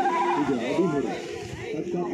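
Several children's voices shouting and calling out over one another, some calls held and wavering.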